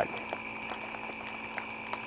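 Vacuum packer pump running steadily, drawing the air out of a Mylar food-storage bag through a vacuum packing needle: a constant hum with a faint high whine.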